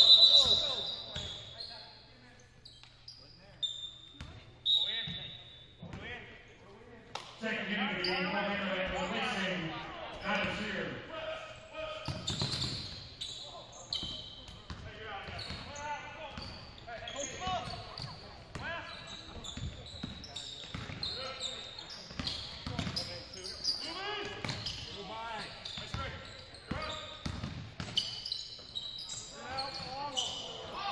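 Gym ambience at a basketball game: a shrill whistle blast at the very start, then voices and shouts from the crowd in a large echoing hall, with a basketball bouncing on the hardwood court.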